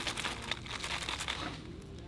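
Clear plastic pump bottle filled with soap cubes being handled and shaken: a quick run of small clicks and crinkles from the plastic and the cubes inside, thinning out near the end.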